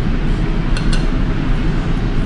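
Steady low background hum, with two quick light clicks a little under a second in: a metal fork knocking against the dishes.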